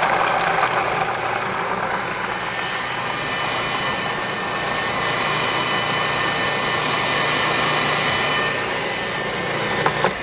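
Food processor motor running steadily, grinding fresh cranberries fine. It stops near the end.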